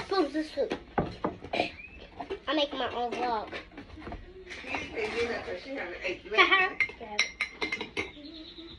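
A young child's voice, with sharp clinks and knocks of a spoon, ceramic mugs and a metal can being handled on a table, a cluster of them about a second in and again near the end.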